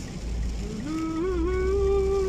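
A woman's voice holding one long sung note, starting about a second in and wavering slightly in pitch, over the low rumble of a car driving in heavy rain.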